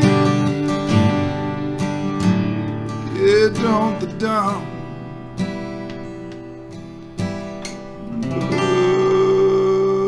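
A man singing to a strummed acoustic guitar. There is a wavering sung line about three seconds in and a long held note near the end, over chords that grow quieter through the middle.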